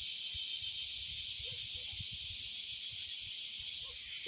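A steady, high-pitched insect chorus: an unbroken, even hiss.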